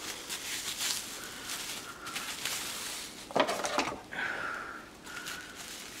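Plastic grocery-bag strips rustling and crinkling as they are pulled and knotted by hand, with a louder burst of crinkling a little past halfway.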